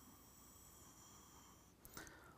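Near silence: room tone, with a faint steady high-pitched whine that stops shortly before the end.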